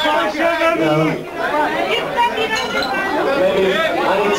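Crowd chatter: many people talking loudly at once in a large, crowded room, the voices overlapping with no single one standing out.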